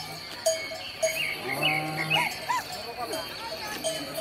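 Bells on grazing cattle clanking irregularly as the herd moves, with a low cow moo around the middle.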